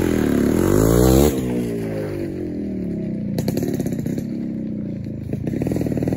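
A 1989 Yamaha RX100's two-stroke single-cylinder engine revs up, drops sharply a little over a second in as the bike pulls away, then runs on as it rides off, with a few sharp pops about halfway through.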